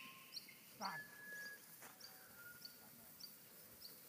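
Faint outdoor rural ambience: a small high-pitched chirp repeating about twice a second, like a bird or insect calling, with a brief lower call about a second in.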